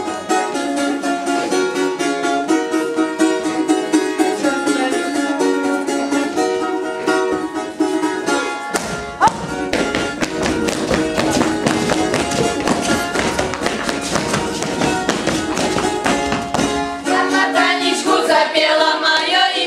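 Button accordion playing a folk dance tune in held chords, turning to a faster, busier rhythm about halfway through. Voices begin singing near the end.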